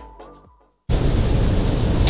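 The tail of a music intro with a steady beat fades out, and after a brief gap a loud, even hiss like static cuts in abruptly about a second in, as grainy old video footage begins.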